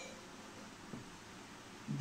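Faint scratching of a marker pen writing on a whiteboard, with a small tick near the start and another about a second in.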